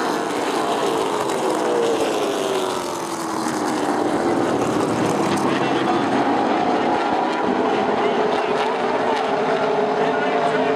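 A pack of stock car engines running at speed on an oval track. The pitch sags over the first few seconds as the cars pass, with a slight dip in loudness, then holds steady.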